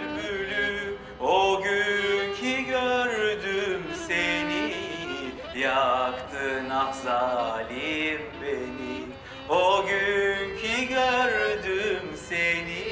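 A man singing into a handheld microphone, drawing out long held notes that waver and bend in pitch.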